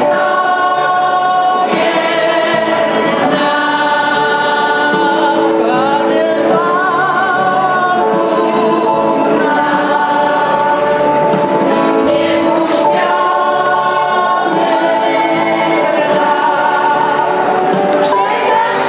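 An amateur choir of older women and men singing a Polish Christmas carol together, the voices carrying a sung melody without a break.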